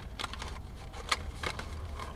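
Faint scattered clicks and rustles of a cardboard takeout box being handled, over a low steady hum.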